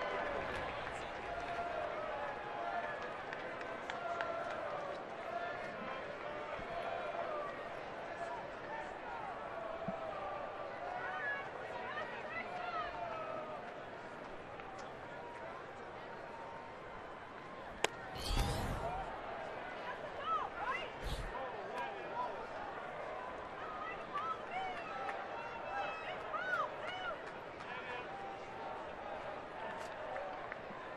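Ballpark crowd murmur, many fans talking at once. About two-thirds of the way through a single sharp pop, a pitch smacking into the catcher's mitt for ball one, is followed at once by a short louder burst of noise and another a few seconds later.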